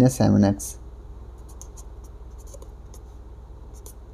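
Blue felt-tip marker writing on paper: a run of short, faint scratchy strokes as figures are drawn, starting about a second and a half in.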